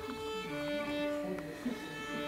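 Violin being tuned: open strings bowed in pairs as long, steady held tones, the instrument put slightly out of tune by rising humidity in the hall.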